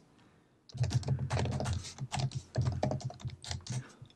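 Quick typing on an Apple Magic Keyboard: a fast run of keystrokes that starts under a second in and goes on almost to the end.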